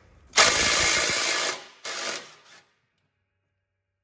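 Electric ratchet with a 9/16 socket running to spin off the nut on top of a lawn tractor's mower deck lift rod. It runs for about a second, then gives a shorter second burst.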